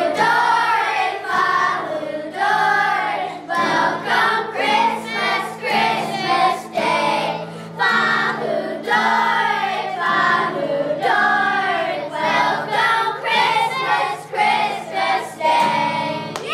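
A group of children singing a song together, accompanied by a strummed acoustic guitar holding steady chords.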